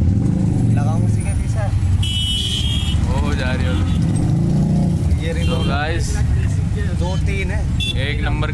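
Auto-rickshaw engine running with a steady low rumble while it creeps along in slow traffic, a horn sounding briefly about two seconds in, with voices nearby.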